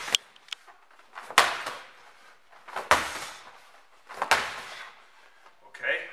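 Medicine ball thrown hard against a wall and caught, over and over: four loud thuds about a second and a half apart, each echoing briefly in the room.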